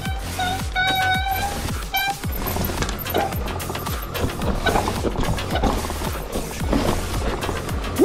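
Mountain bike rolling down a dirt forest trail: tyres running over roots and ground with continual rattling of the bike, and a brief high squeal about a second in. Music plays underneath.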